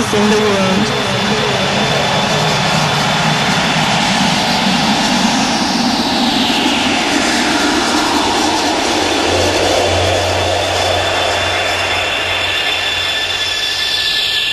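A jet-aircraft flyby sound effect in a dance radio mix: a loud, steady rushing noise whose pitch sweeps down and back up, with a low hum joining about nine seconds in.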